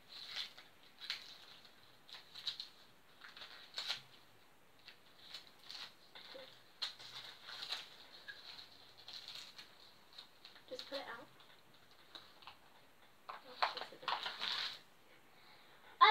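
Wrapping paper crinkling and crackling as a small gift-wrapped package is worked open by hand, in short, irregular crackles. Faint child voices or giggles come in twice in the second half.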